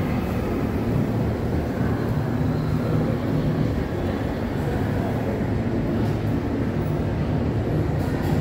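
Steady low rumble of background ambience, with no distinct events standing out.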